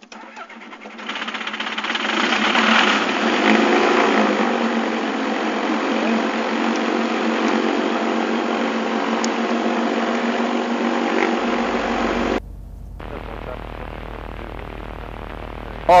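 A Searey amphibian's propeller engine being started: a second of cranking, then it catches and revs up, its pitch wavering for a couple of seconds before it settles into a steady run. About twelve seconds in the sound drops suddenly to a quieter, steady engine hum.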